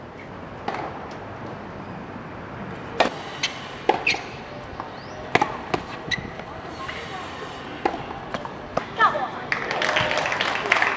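Tennis balls struck by rackets and bouncing on a hard court: a string of sharp, separate pops at irregular spacing, with voices murmuring in the background.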